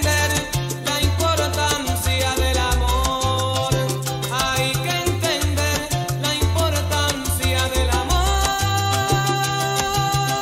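Recorded salsa music playing, with a changing bass line under a steady percussion beat.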